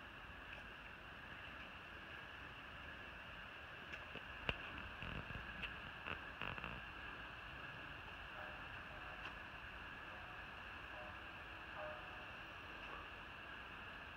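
Steady insect chorus making a high, even drone, with a few soft knocks around the middle.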